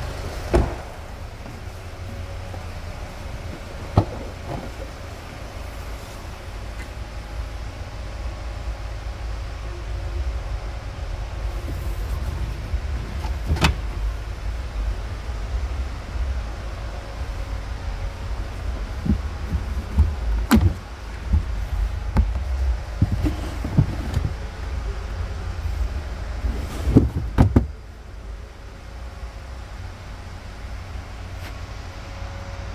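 Handling sounds from a Hyundai Tucson's doors and tailgate: a few sharp knocks and clunks, the loudest a cluster near the end, over a steady low rumble.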